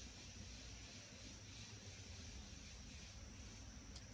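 Near silence: a faint, steady background hiss with no distinct sounds.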